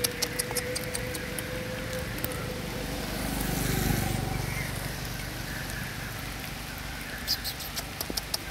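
A vehicle passing on the nearby road, rising and falling about three to four seconds in, with sharp clicks near the start and again near the end.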